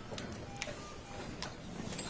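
Boardroom bustle just after a meeting adjourns: papers shuffling and people rising from their chairs, with a few sharp clicks.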